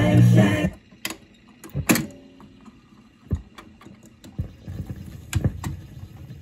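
A 45 playing on a BSR console record changer cuts off abruptly under a second in. The changer then cycles through a series of mechanical clicks and clunks as the next single drops onto the stack.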